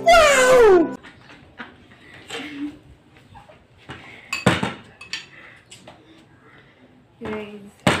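A man's loud, exaggerated laughing cry, falling steeply in pitch and cut off just under a second in. Then quiet clinks of a spoon on a plate, and a sharp knock about four and a half seconds in as a plastic water bottle lands on the table.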